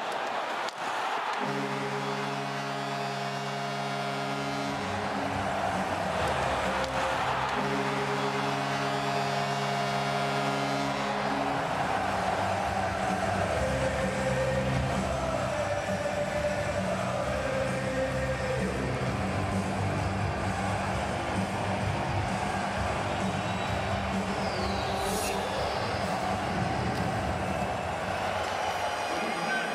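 Hockey arena sound: a steady crowd din, with two long held musical chords over it in the first half, each lasting about four seconds and separated by a short gap.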